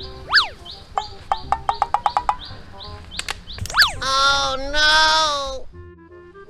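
Cartoon-style comedy sound effects. A quick whistle glides up and down twice, and a run of rapid ticks comes in between. Near the end a drawn-out 'oh no' voice effect is heard, over steady high chirping.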